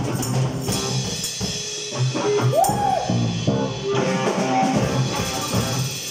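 Live rock band jamming: drum kit with electric guitars. About two and a half seconds in, one note slides up and back down.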